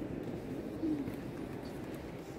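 Low background murmur of visitors inside a large stone cathedral, with one brief low call about a second in.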